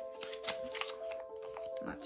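Soft background music with steady held notes, over a scatter of light clicks and rustles from something being handled.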